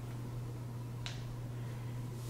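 Quiet room tone with a steady low hum and one sharp click about a second in.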